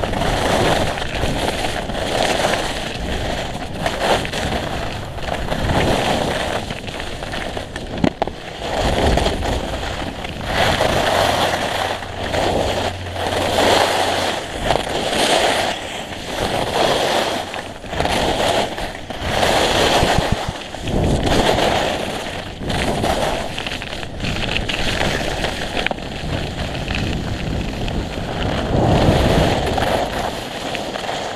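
Skis carving and scraping over hard-packed snow through a run of turns, a hissing, crackling swell with each turn about every second or so, over a low rumble of wind on the camera microphone.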